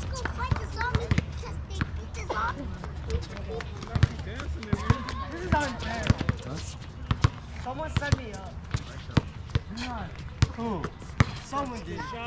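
Basketball bounced repeatedly on an outdoor hard court during a pickup game, as sharp irregular thuds, with players' voices calling out in the background.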